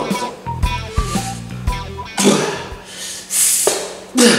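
Background music with a guitar for about two seconds. Then come two loud, hissing bursts of strained breath as a man squeezes two watermelons against his chest, and a brief sharp crackle near the end. The man cannot tell whether the crackle comes from the watermelon or from his own arm.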